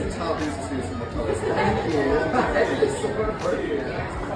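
Indistinct conversation: several people talking over one another, too mixed to make out the words.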